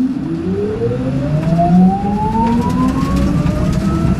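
Electric motor whine of the Nissan Leaf Nismo RC race car, with its production Nissan Leaf powertrain, rising steadily in pitch as the car accelerates hard, heard from inside the cabin over a low road and tyre rumble.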